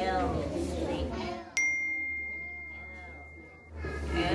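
A single high, clear ding, like a small bell or chime, about one and a half seconds in. It rings as one steady tone and fades away over about two seconds.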